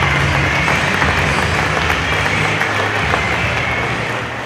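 Audience applauding over music with a steady low bass line, easing slightly toward the end.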